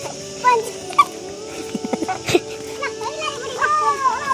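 Short high shouts and squeals from playing voices over steady background music, with one sharp knock about halfway through.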